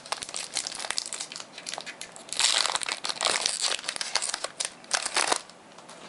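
Foil Pokémon booster-pack wrapper crinkling in irregular bursts as it is handled and opened, loudest a little over two seconds in; it stops about half a second before the end.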